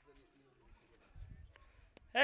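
Near silence: faint outdoor room tone, with a brief faint low rumble a little over a second in.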